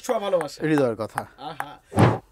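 Orange ping-pong ball bouncing on a flat wooden paddle: a string of light taps, heard over a man's voice in the first half.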